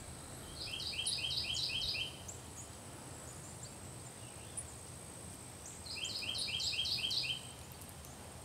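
A songbird sings two short songs, each a quick run of about seven repeated two-note phrases lasting about a second and a half, the second coming about four seconds after the first.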